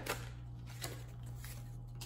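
Tarot cards being shuffled by hand: soft papery sliding with a few light flicks, faint, over a steady low hum.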